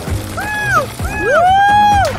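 Cartoon background music with a voice's wordless cries over it: two short arching calls, then a rising cry held loud near the end.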